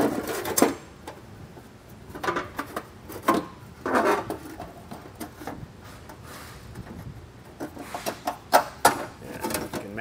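Thin embossed metal heat shield being handled and pushed up against a car's underbody, crinkling and knocking in scattered bursts, with a run of sharper knocks near the end.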